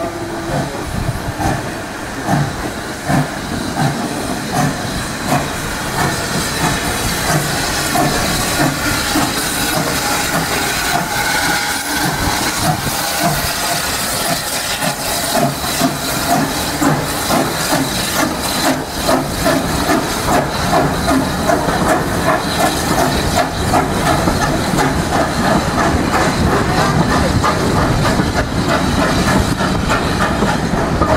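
Steam tank locomotive pulling away with its train: steady hiss of escaping steam under regular exhaust chuffs that come quicker as it gathers speed. Near the end the coaches roll past, their wheels clicking over the rail joints.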